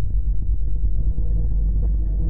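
Low, steady drone from an atonal ambient soundscape piece, its sound packed into the bass.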